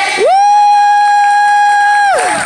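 A loud, steady held tone at a single pitch, gliding quickly up to it about a quarter second in and gliding down as it stops near the end.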